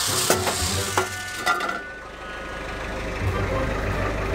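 Electric orbital sander running against a wooden plank, a steady hiss that cuts off about two seconds in. A low rumble remains and grows louder near the end.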